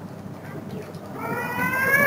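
A single drawn-out, high-pitched cry with a slight upward glide in pitch, lasting about a second and starting past the middle, over faint room noise.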